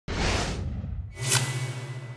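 Swoosh sound effects of an animated logo intro. A broad whoosh comes at the start and fades away. A sharper whoosh follows a little past a second in, and after it a low steady hum carries on.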